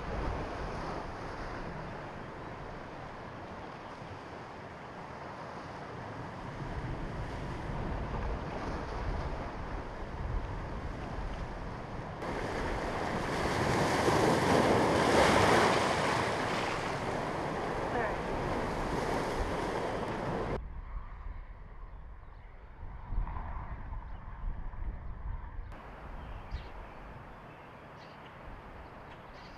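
Lake waves surging and breaking against shoreline rocks and sandbags, with wind on the microphone; the surf is loudest about halfway through. For the last several seconds it gives way to a quieter outdoor background with a few faint knocks.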